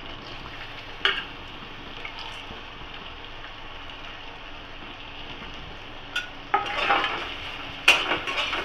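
Spices and paste frying with a steady sizzle in hot oil in an aluminium kadai, with one knock about a second in. Near the end a steel spatula scrapes and clanks against the pan as the mixture is stirred.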